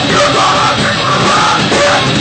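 A loud live rock band playing, with a yelled vocal over electric guitar.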